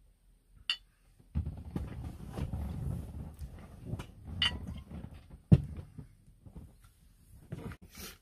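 Jägermeister glugging out of the narrow neck of its glass bottle into a shot glass, for about four seconds. A single sharp knock follows.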